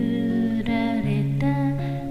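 A voice humming a slow melody in long held notes over acoustic guitar, moving to a new note a couple of times.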